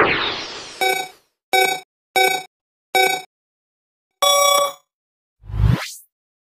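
Electronic intro sound effects: a whoosh, then four short pitched beeps about two thirds of a second apart, a longer beep-tone, and a rising whoosh with a deep boom near the end.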